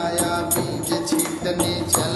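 Bhojpuri devotional folk song (bhajan): a man singing over a steady percussion beat of bright, repeated strikes.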